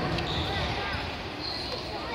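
Indistinct voices and background noise in a large sports hall.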